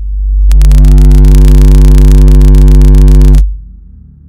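Very loud electrical mains hum through a sound system. It swells up, turns into a harsh buzz about half a second in, and cuts off suddenly after about three seconds.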